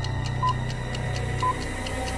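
Sports-broadcast intro music: a steady low drone under rapid ticking, with two short high beeps a second apart like a countdown clock.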